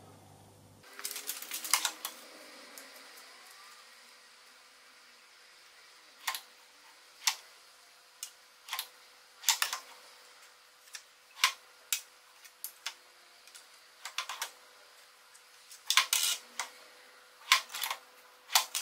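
Metal cup-shaped valve lifters for a Subaru cylinder head clinking as they are picked out of a sorted drawer tray and handled: sharp clicks at irregular intervals, several in quick clusters. A faint steady hum lies underneath.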